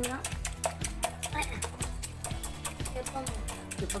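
Small wire whisk beating an egg in a glass bowl: rapid, even clicks of the wires against the glass, several a second. Background music plays underneath.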